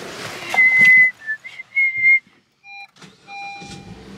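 A few clear whistled notes at about the same high pitch, the middle one a little lower. After a short silence come two electronic beeps, a short one and then a longer one.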